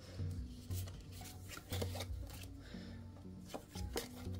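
Oracle cards being picked up, slid and laid down on a cloth-covered table: a few soft taps and rubs. Quiet, steady background music plays underneath.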